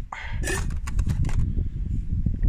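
Light metallic clicks and clinks as a hot metal camp pot of just-boiled water is handled and set down, after a brief louder noise about half a second in. A low wind rumble on the microphone runs underneath throughout.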